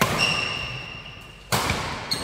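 Badminton rally: a jump smash hits the shuttlecock with a sharp crack, and a second loud hit comes about a second and a half later, each echoing in the hall. Shoes squeak on the court floor between the hits.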